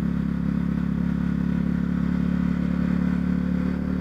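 Honda CB Twister 250's single-cylinder engine running at a steady pitch as the motorcycle cruises at about 35 km/h.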